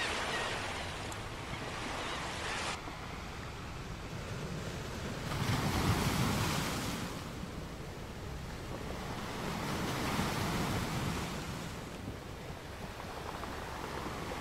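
Ocean surf washing onto a beach, swelling up and falling away twice, about six and ten seconds in. A seagull calls briefly right at the start.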